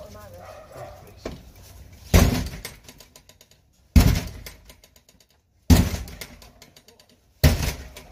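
A house's front door being struck hard four times, evenly spaced about every second and three-quarters, each blow a heavy thud that dies away: police forcing entry.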